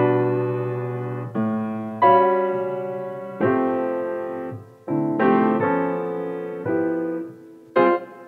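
Slow, gentle piano music: chords struck about once a second, each left to ring and fade before the next.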